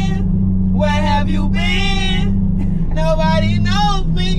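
Voices laughing and vocalizing inside a moving car's cabin, with a short held note near the middle, over a steady low engine and road drone.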